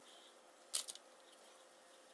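Quiet room tone with one brief, soft rustle a little under a second in.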